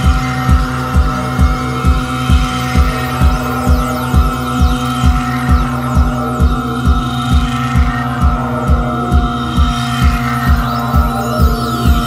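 Electronic passage of a live band's instrumental set: a deep pulsing beat, a little over two pulses a second, under a steady hum of held synthesizer tones.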